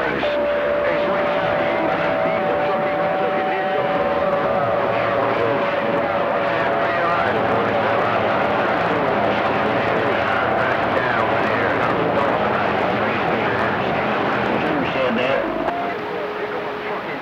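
CB radio receiver on channel 28 with the band open: a steady rush of static and skip noise with faint garbled voices in it. Two or three steady whistle tones of slightly different pitch sound from just after the start until about eleven seconds in: carriers beating against each other as distant stations key up together.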